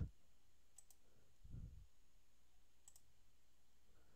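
Two faint computer mouse clicks, one about a second in and another near three seconds, over near-silent room tone, with a soft low thump between them.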